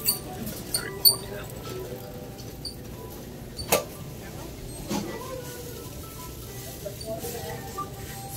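Shop-floor ambience: faint background music and indistinct distant voices, with a few short high squeaks in the first second or so and a sharp click about four seconds in.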